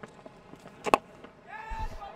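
A single sharp crack of a cricket bat striking the ball about a second in, picked up by the stump microphone. Near the end a voice starts to call out.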